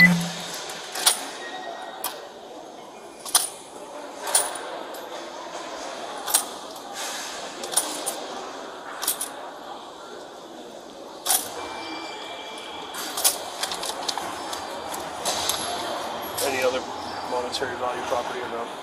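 Scattered sharp clicks and taps of small property items being handled on a counter, one every second or two, over a steady murmur.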